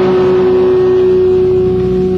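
A live rock band's amplified, distorted guitars holding one steady note as the song rings out.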